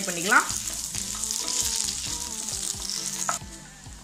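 Sliced onions sizzling as they fry in hot oil in a nonstick pan, stirred with a wooden spatula. The sizzle is steady and cuts off suddenly a little over three seconds in.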